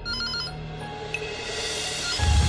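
Desk telephone ringing with a pulsing electronic trill that stops about half a second in, over soft background music.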